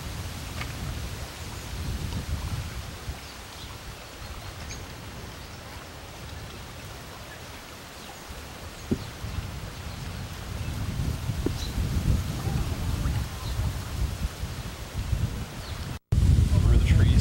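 Wind buffeting the camcorder microphone, a low rumble that rises and falls in gusts and grows stronger in the last few seconds, over a steady faint hiss.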